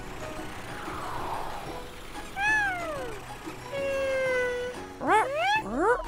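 Cartoon sound effects over soft background music: a falling swoosh, then a short falling squeaky call, a held tone, and two quick rising squeaky calls near the end.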